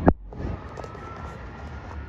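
A single sharp knock right at the start, then steady outdoor ambience of wind and distant city noise.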